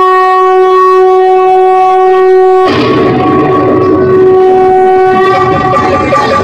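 Music for the dance: a loud, long-held wind-instrument note, steady in pitch, with rougher low sound joining underneath it from about halfway through.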